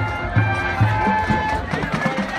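High school marching band playing: held horn notes over a steady low pulse of about two bass notes a second.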